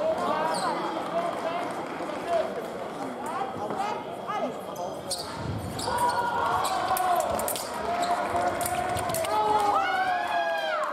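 Foil fencers' footwork on the piste: repeated thuds and stamps with sharp clicks from the blades, against voices in the hall. A voice calls out loudly near the end.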